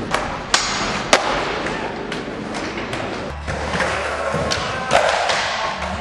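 Skateboard wheels rolling with a steady rush, broken by sharp clacks of the board striking the ramp or rail, about half a second in, about a second in, and again near five seconds.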